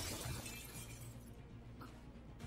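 A sudden crash like something shattering, its hiss tailing off over about a second, as a sound effect from the anime film's soundtrack, with faint music beneath.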